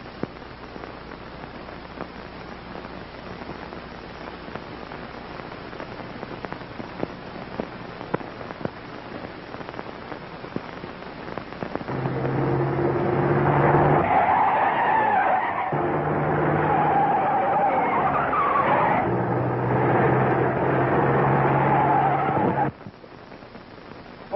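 A car driven fast, its engine running hard and its tyres squealing with a wavering whine. It starts about halfway in, pauses briefly twice and stops abruptly near the end. Before it there is only the hiss and crackle of an old film soundtrack.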